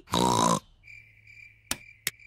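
A short pig snort from a cartoon character in the first half second. Then crickets chirp steadily as night-time ambience, broken by two sharp clicks.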